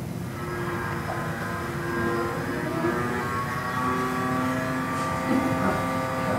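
A steady droning hum with held tones that change pitch a couple of times.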